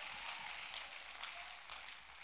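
Congregation clapping and cheering, faint and dying away.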